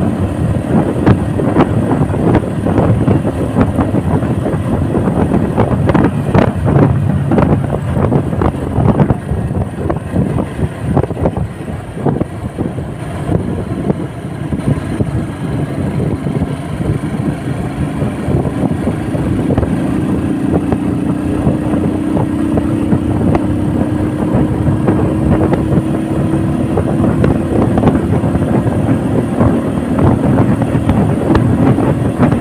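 On-board sound of a motorcycle being ridden: the engine running under way with wind rushing over the microphone. The sound eases off somewhat around the middle, then the engine note climbs slowly toward the end as the bike gains speed.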